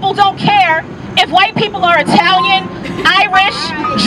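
A woman speaking into a microphone, carried over a loudspeaker, with a steady low hum underneath.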